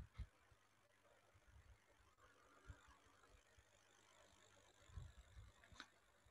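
Near silence: faint room tone with a few soft, brief low thumps and clicks.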